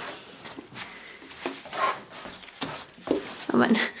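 Goat kids in a hay-bedded pen: soft scattered clicks and rustles as they chew apple pieces and shift on straw and wooden boards, with a short exclaimed 'oh' near the end.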